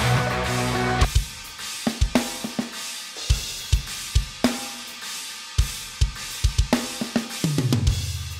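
Metal drum kit from EZdrummer 3's Metal Mania EZX with the Nordic Metal preset, a sampled, pre-mixed modern metal drum sound of kick, snare and cymbals. It plays a groove of accented hits with gaps between them. The rest of the band drops out about a second in, leaving the drums alone.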